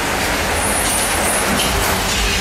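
Ghost coaster car rolling along its track in a steady, loud rumble. A brief high hiss comes about half a second in.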